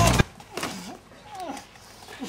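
Background music cuts off abruptly just after the start. Then a person makes two short vocal noises that slide in pitch.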